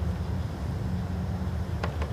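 Indoor arena ambience: a steady low hum with a faint click near the end.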